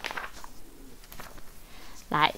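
A bird cooing faintly in low, soft notes, with a few light clicks, the clearest one right at the start.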